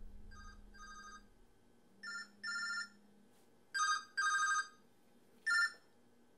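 Mobile phone ringtone: short electronic tone bursts, paired at first, getting louder with each ring.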